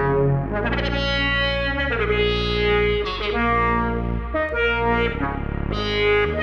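Eurorack modular synthesizer playing a generative Polykrell patch. A sustained synth bass sits under rich-toned melody notes that change pitch roughly once a second.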